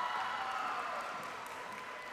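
Faint crowd cheering and clapping in a large arena hall, fading away steadily.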